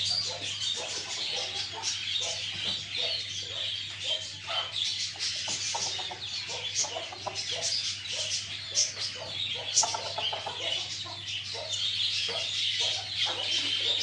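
Aseel chickens (a rooster, hens and chicks) clucking in short, scattered calls while moving about loose, over a constant high-pitched chirping of small birds.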